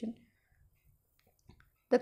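Speech trails off, then a pause of near silence for over a second with one faint tick, before speech starts again near the end.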